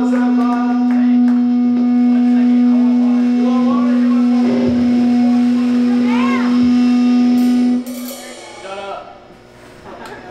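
An amplified electric guitar holds one sustained note as a punk rock song ends, ringing steadily and then cutting off suddenly about eight seconds in. Quieter voices and stage noise follow.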